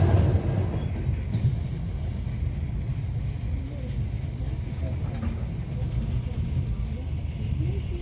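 Steady low rumble of a passenger train running at speed, heard from inside the carriage.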